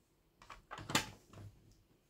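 Hard plastic graded-card slabs being handled and set down: a few short clicks and taps, the sharpest about a second in.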